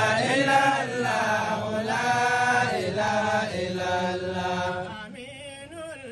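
Melodic vocal chanting in long, held phrases that bend in pitch. It drops away about five seconds in, leaving a fainter, wavering voice.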